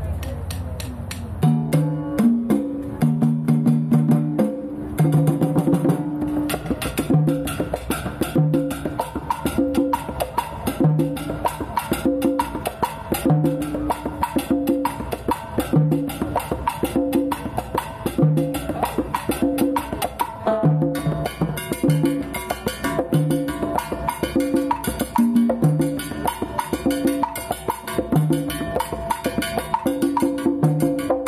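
Hand drums played in a Latin rhythm: repeating pitched drum strokes with a fast ticking pattern over them, starting about a second and a half in. The playing gets fuller and brighter about twenty seconds in.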